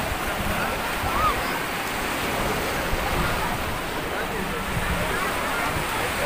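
Small sea waves washing onto a sandy beach in a steady wash of surf, with faint chatter from a crowd of bathers.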